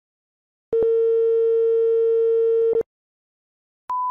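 A steady, buzzy electronic tone on one pitch sounds for about two seconds, after a silent pause, and stops. Near the end a higher, pure steady line-up test tone starts as the broadcast feed switches to colour bars.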